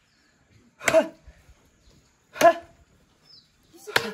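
A heavy wooden pole striking down: two loud thuds about a second and a half apart, and a third just before the end.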